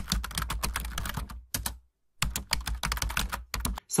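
Ballpoint pen writing numbers on paper, sped up, so the pen strokes come as a rapid run of scratches and taps. There is a brief silent break just before the middle.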